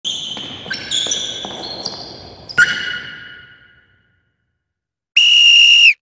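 A quick run of about eight struck, ringing notes that die away over a few seconds, then one steady, loud whistle blast lasting under a second near the end.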